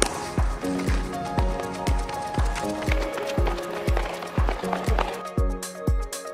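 Upbeat electronic background music with a steady kick-drum beat and held synth notes.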